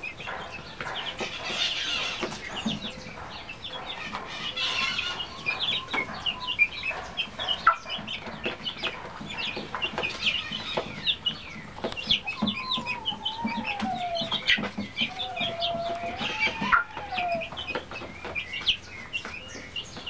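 Young chicks of a frizzle and Músico Brasileiro cross, peeping in many short, high chirps while pecking at a feeder, with scattered sharp pecking clicks. Two longer, wavering chicken calls come in the second half.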